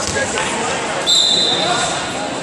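A referee's whistle blown once, starting about halfway through, a steady shrill tone held for about a second, over the voices of people in a sports hall. Just before it comes a thud as a wrestler goes down on the mat.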